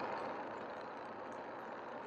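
Steady, faint vehicle noise heard inside a car's cabin: an engine at idle and traffic close by, with no distinct events.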